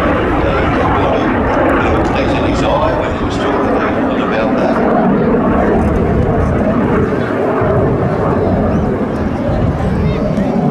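Single-engine jet trainer, a BAC Jet Provost T.3A, flying overhead: steady loud turbojet engine noise from its Armstrong Siddeley Viper, with voices mixed in underneath.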